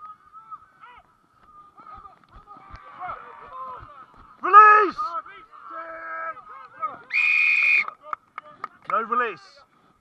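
Rugby players shouting short calls on the field, loudest about four and a half and nine seconds in, and a referee's whistle blown once for under a second about seven seconds in.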